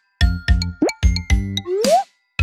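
Bouncy children's background music in short, rhythmic notes, starting just after a brief gap. Cartoon sound effects ride on it: a quick upward pop about a second in and a rising glide near the end.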